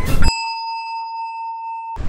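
An electronic bell-like ding sound effect: one clear high tone held steady for about a second and a half over silence, then cut off abruptly. A brief burst of loud noise comes just before it.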